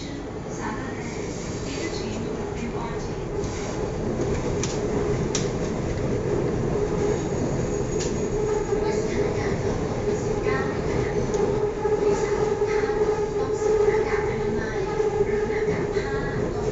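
Running noise of a BTS Skytrain carriage heard from inside the car as the train travels along the elevated track: a steady rolling sound with a hum, growing louder over the first several seconds and then holding.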